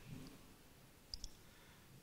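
Near silence, broken about a second in by a faint short click from a presentation remote's button advancing the slide.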